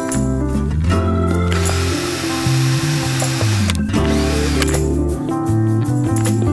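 Handheld rotary tool running for about two seconds near the middle, working a small piece of popsicle stick, over background music.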